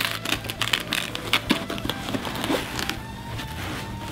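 Camouflage plate-carrier fabric and webbing straps rustling and scuffing in quick irregular bursts as the shoulder straps are pulled through the back plate pocket, the handling dying down near the end. Soft background music runs underneath.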